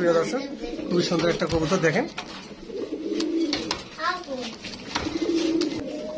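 White Bombay pigeons cooing in a cage: low, rolling coos, the longest ones in the second half lasting about a second each.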